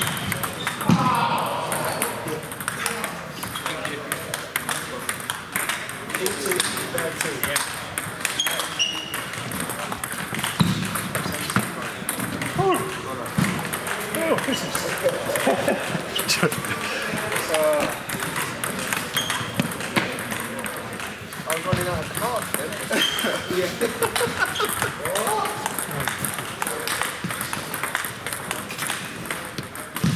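Table tennis balls clicking irregularly off bats and tables around a sports hall, with voices talking in the background.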